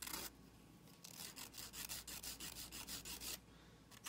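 Nail file rubbing against a fingernail in quick back-and-forth strokes, about five or six a second, after a short scrape at the start. The strokes stop shortly before the end.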